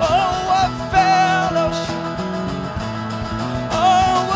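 Live band music: a voice sings long, wavering held notes over strummed acoustic guitar and electric bass. The voice breaks off about a second and a half in and comes back near the end.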